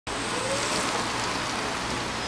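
Steady hiss of tyres on wet pavement as a small electric car, the CAMSYS CEVO-C microcar, rolls up with no engine sound.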